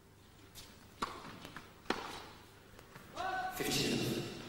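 Tennis ball struck by rackets: a sharp hit about a second in and another just under a second later, echoing in an indoor arena. Near the end a loud shouted call rings out, the loudest sound here.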